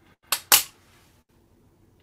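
Two quick, sharp snips of scissors close together, the second louder, trimming the butt ends of a small bundle of hairs level.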